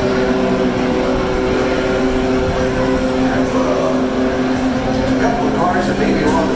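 Race-track grandstand ambience: indistinct voices over a steady, even drone of distant IndyCar engines on the circuit.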